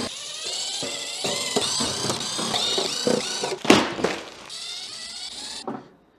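Milwaukee cordless drill/driver backing screws out of a battery case's lid, its motor whine rising and falling in pitch again and again. There is a sharp knock about three and a half seconds in.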